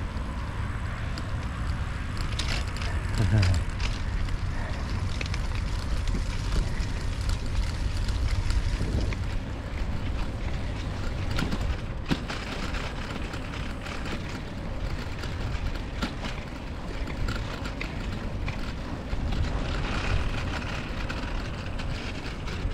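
Riding noise from a bicycle moving along an asphalt cycle path: a steady rush of wind on the microphone and the rolling of the tyres, with a few faint clicks.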